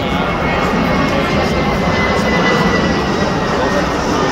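A jet airliner passing overhead, its engine noise with a faint whine that slowly falls in pitch, over the steady murmur of a large ballpark crowd.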